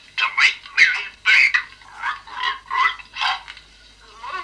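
Animal calls played from a toy talking story-set record: a run of about eight short, thin-sounding calls, roughly two a second, that stop about three and a half seconds in.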